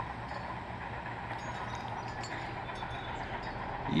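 Distant bulldozer's diesel engine running steadily, a low drone.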